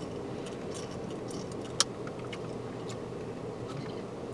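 Quiet, steady hum inside a car, with a few faint ticks and one sharp click a little under two seconds in, as a plastic spray bottle is handled and drunk from.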